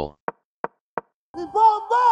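Three short, sharp knocks about a third of a second apart, then a person's voice starts a drawn-out vocal sound about a second and a half in, which is the loudest part.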